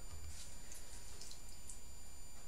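A lemon being squeezed hard by hand over a bowl: a few faint, soft wet ticks over a low steady hum.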